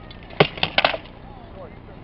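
Rattan practice swords striking a shield and armour in a quick flurry of four sharp blows within about half a second.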